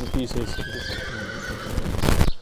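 A horse neighing in the background, a faint high call held for about a second mid-way, under people's voices.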